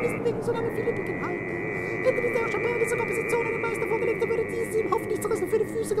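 Experimental vocal music: a male singer's voice warbling and sliding up and down in pitch without a break, over a steady high held tone.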